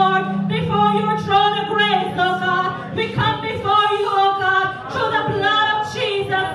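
Slow worship song sung into a microphone, with a woman's voice leading and other voices joining. A low held note sits underneath at first and fades after about a second and a half.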